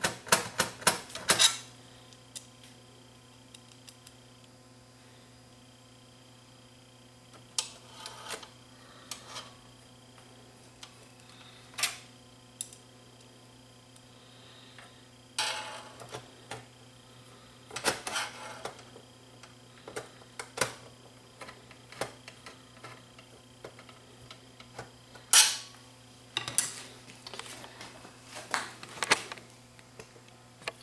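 Screwdriver work on the metal chassis of a DAT tape transport: irregular small metallic clicks and clinks as screws are driven and parts handled, with a few louder clatters. A faint steady low hum runs underneath.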